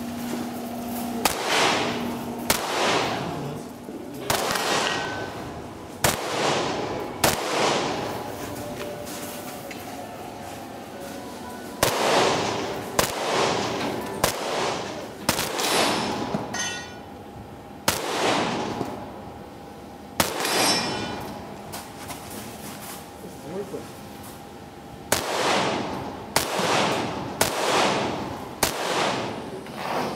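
Rifle shots fired on a practical shooting course, one at a time, in strings about a second apart with short pauses between strings, each shot followed by a brief echoing tail.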